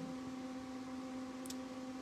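Room tone with a steady low hum, and a faint tick about one and a half seconds in.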